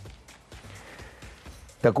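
Faint background music during a pause in a man's speech, with his voice coming back in just before the end.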